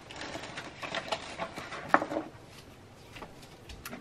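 Light handling noise: soft rustling and a few small clicks as paper and a plastic-sleeved spiral binder are moved about, with the sharpest click about two seconds in.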